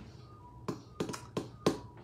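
Sharp finger taps, five in about a second, on the device being used to refresh a livestream that will not load.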